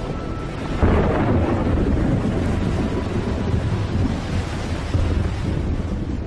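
Thunder: a sudden loud clap about a second in, followed by a long heavy rumble that rolls on, with a second jolt near the end.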